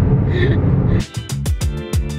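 Steady low road rumble inside a moving car's cabin, cut off about a second in by background music with a regular beat.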